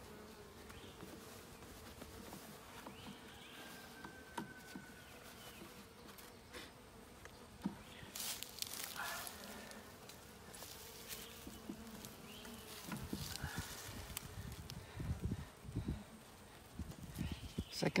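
Honey bees buzzing steadily around an opened nuc box, a faint continuous hum. Scattered wooden knocks and scrapes as the frames are worked loose and lifted, more of them in the second half.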